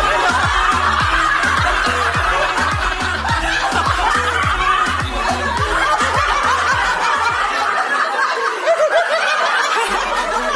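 A woman laughing over background music with a steady beat; the beat drops out about eight seconds in.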